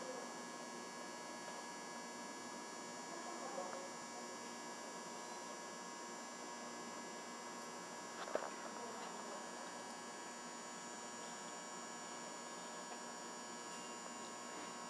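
Steady electrical hum made of several constant tones over faint room noise, with a single brief click a little past halfway.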